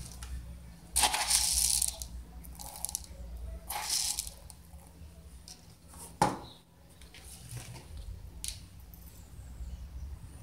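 Granular fertilizer being scooped and scattered into orchid pots: several short rattling, hissing bursts of pellets, with a sharp knock about six seconds in.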